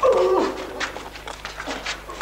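A man's short anguished cry, falling in pitch, at the very start, followed by scattered knocks and scuffling of a struggle.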